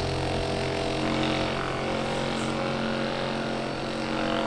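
Handheld deep-tissue percussion massage gun running on its third and fastest speed setting, its motor giving a steady, even buzzing hum.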